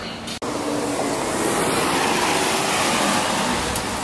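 BMW E39 M5 V8 exhaust as the car pulls away, a steady, full-range sound that starts after an abrupt cut about half a second in.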